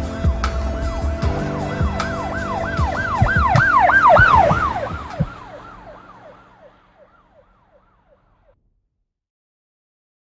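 Emergency-vehicle siren in a fast yelp, its pitch rising and falling about three times a second. It swells to its loudest about four seconds in, then fades away. Underneath, music with held notes and low thuds fades out about five seconds in.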